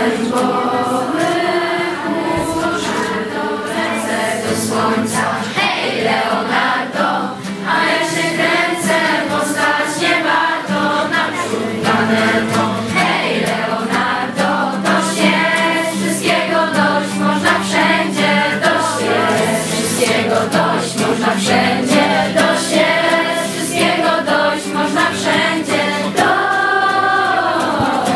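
A group of voices singing a song together to acoustic guitar accompaniment.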